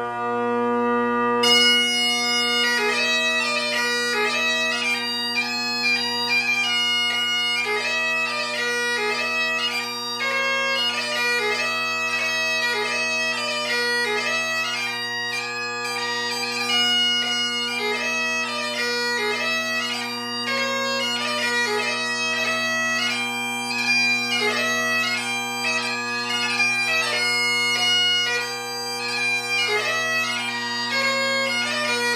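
Great Highland bagpipe: the drones sound steadily under one held chanter note, then about a second and a half in the chanter starts the strathspey, a run of quick notes broken up by gracenotes over the unchanging drones.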